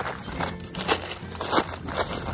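A long sheet of brown packing paper crinkling and rustling as it is held up and opened out in the breeze, making lots of noise, with a few sharp crackles about half a second apart.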